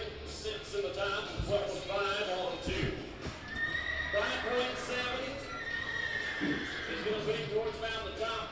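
A horse whinnies in one long, high, slowly falling call from about four seconds in, over background voices, with a couple of dull thumps in the first three seconds.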